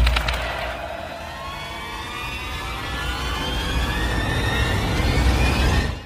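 Intro sound effect: a deep rumble under a pitched whine that rises slowly and builds in loudness, opening with a brief rattle and cutting off suddenly at the end.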